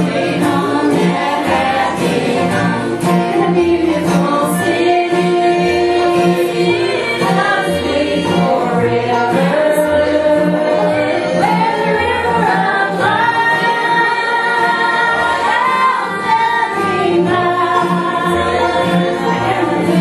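Live gospel song: a woman sings at the microphone with other voices joining in, over an upright bass playing a steady beat and plucked string accompaniment.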